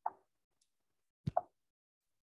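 Two brief soft knocks, one at the very start and another about a second and a half later.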